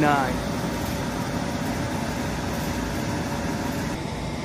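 Steady background noise of a large warehouse store: an even ventilation-type hum with a faint steady tone, unchanging throughout.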